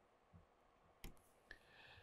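Near silence: room tone, with two faint short clicks, about a second in and again about half a second later.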